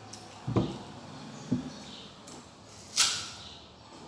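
Someone eating crisp unripe green mango: two dull low thuds about a second apart, then a loud sharp crunch about three seconds in.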